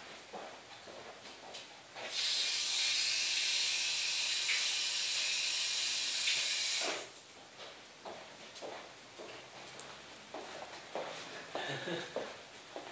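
Running tap water for about five seconds, a steady hiss that starts about two seconds in and stops abruptly, as slip is rinsed off a hand.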